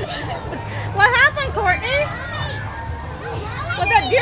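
Young children's voices chattering and squealing excitedly over a steady low background rumble.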